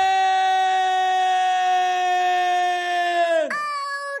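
A single voice holding one long, high yelled note, which falls in pitch and breaks off about three and a half seconds in, followed by a short second cry near the end.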